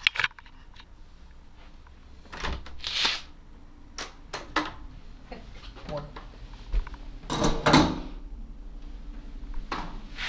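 Handling noise from a handheld camera on the move: scattered clicks and knocks, with louder rustling bursts about three seconds in and again near eight seconds.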